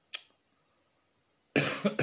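A person coughing twice in quick succession, about one and a half seconds in, after a brief faint click near the start.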